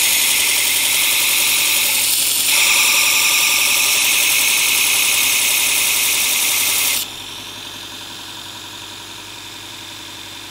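Steel plane blade ground bevel-down on a Robert Sorby ProEdge belt sharpener's 60-grit zirconia belt, regrinding a rounded-over 25-degree bevel: a loud, steady hissing grind that shifts in tone a couple of seconds in. It stops about seven seconds in as the blade is lifted off, leaving the sharpener's belt running more quietly.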